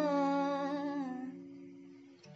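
A woman's voice holding the last sung note of a line over a ringing acoustic-guitar chord, both fading away; the voice trails off a little past the middle and the chord dies down after it.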